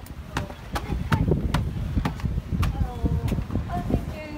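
Footsteps climbing stairs, a sharp step about every half second, over low wind rumble on the microphone, with faint voices in the background.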